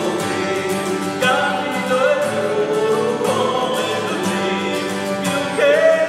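Live singing accompanied by two acoustic guitars, with long held notes that waver in pitch; one note bends upward near the end.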